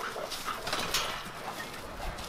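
A Rottweiler moving about on dry leaves and dirt, with faint irregular scuffs, rustles and clicks from paws and footsteps.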